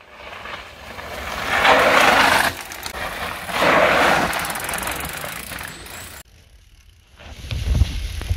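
Mountain bike tyres crunching over loose, dry dirt as two riders pass close by one after the other, each pass a swell of gritty noise about two seconds apart. The sound cuts off suddenly about six seconds in, and a low rumble builds near the end.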